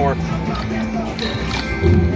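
Slot machine reels spinning with the machine's electronic spin music and chimes over steady casino background noise; the reels come to a stop near the end.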